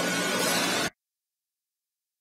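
A steady hiss with a faint low hum beneath it, cutting off abruptly just under a second in and followed by dead silence.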